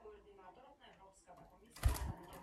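Budgerigars chattering quietly, then near the end a sudden short, loud flurry as one budgie takes off from its perch in a beat of wings.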